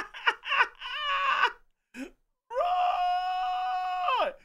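A man laughing hard in quick rhythmic bursts, then a long, high, steady squeal of a voice held for about a second and a half, dropping in pitch at the end.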